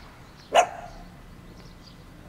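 A dog barks once, a short sharp bark about half a second in.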